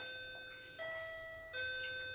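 A chime: three ringing notes going low, higher, then low again, about three quarters of a second apart, each fading away.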